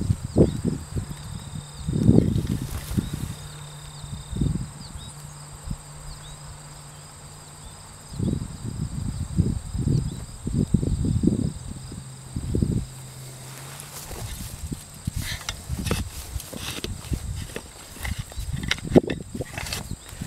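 Hands scraping and pulling through loose garden soil to uncover potatoes: bursts of soft scuffing and crumbling, heaviest about two seconds in, again from about eight to thirteen seconds in, and near the end. Insects chirp faintly and steadily behind it.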